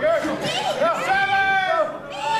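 Spectators shouting at a live wrestling match: high-pitched voices calling out, one call drawn out for under a second, about a second in.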